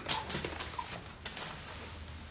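A few light knocks and rustles of people moving about a room: footsteps and clothing as someone sits down on a sofa.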